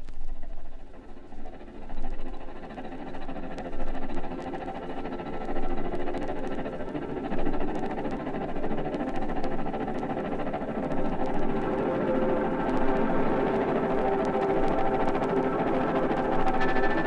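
Late-1960s rock band recording played from a vinyl LP, with light surface crackle clicks. The music comes in out of near quiet as sustained chords that swell about every two seconds, then grows fuller and louder through the second half.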